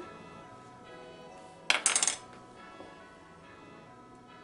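A short rattle of clinks from kitchen utensils knocking against a dish, about halfway through, over soft background music.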